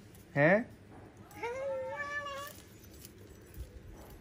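A cat meowing: a short call about half a second in, then a longer drawn-out meow around two seconds in.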